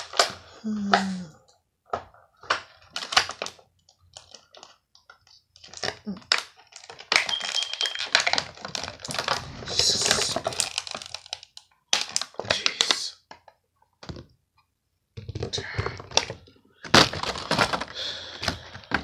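Hard plastic being handled close to the microphone: irregular clusters of sharp clicks, cracks and knocks, with a longer stretch of scraping and rubbing in the middle, as an action figure and its plastic parts or packaging are worked by hand.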